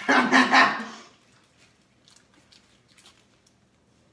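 A young man laughing loudly for about a second, then only faint small clicks and rustles.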